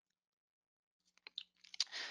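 Silence for about the first second, then a few faint mouth clicks and lip smacks and a soft intake of breath just before speaking.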